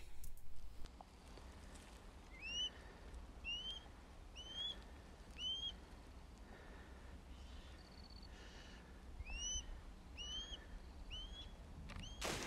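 A bird calling with short, clear chirps that rise and then dip slightly: four in a row, a pause of a few seconds, then three more. Faint wind and outdoor noise run underneath.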